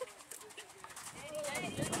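A horse cantering on soft arena footing, its hoofbeats faint and rhythmic, with faint voices in the background.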